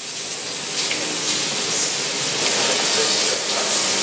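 A steady, loud hiss of rushing noise with no pitch, swelling slightly and then holding.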